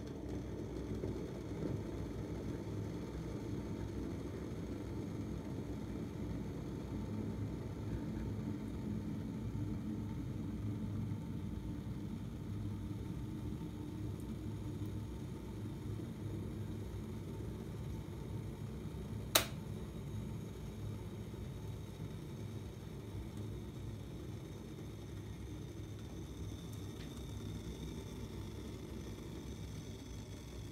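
Redmond glass electric kettle boiling a water-and-vinegar descaling solution: a steady low rumble of water at a rolling boil. A single sharp click comes about two-thirds of the way through.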